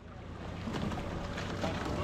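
Wind buffeting a boat-mounted camera's microphone over the water noise of a quad scull under way, with faint scattered clicks. The sound fades up from silence and grows steadily louder.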